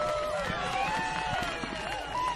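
Several high-pitched voices overlapping, rising and falling in pitch, over a steady street-noise background.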